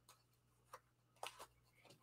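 Near silence, broken by three or four faint, short ticks.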